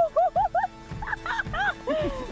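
A woman squealing and laughing with excitement, a quick run of short high yelps, over background music.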